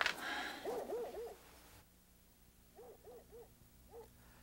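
Owl hooting at night: two runs of three short hoots, about two seconds apart, then one more hoot near the end. A soft hiss fades out about two seconds in.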